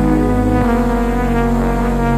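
Dance music with long held low notes over a steady bass; the notes change about half a second in.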